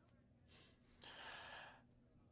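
A person's faint breathing: a short soft breath about half a second in, then a longer breathy exhale like a sigh from about a second in.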